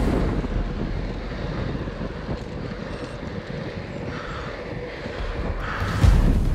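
Wind rumbling over an action camera's microphone as a bicycle descends at about 30 mph, a steady low buffeting that eases a little in the middle and builds again near the end.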